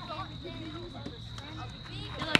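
Spectators' voices talking in the background over a faint, steady high-pitched tone.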